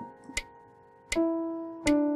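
Digital piano played slowly, single notes and a two-note chord sounding and dying away, over a metronome clicking evenly at about 80 beats a minute, one click every three-quarters of a second.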